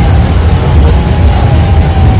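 Loud music with heavy, steady bass and a faint held note, from a public-address loudspeaker.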